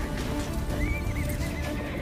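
Dramatic background music with a horse whinnying over it, one wavering call that starts about a second in and slides down in pitch.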